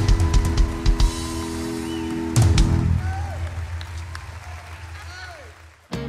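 Live country band ending a song: drum hits, then a final loud accent about two and a half seconds in, after which the held electric guitar and band chord rings out and fades away.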